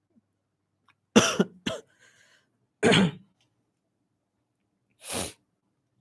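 A man coughing: a pair of short coughs about a second in, another about three seconds in, and a last one near the end.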